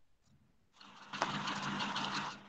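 A steady machine-like noise with a low hum, starting about a second in.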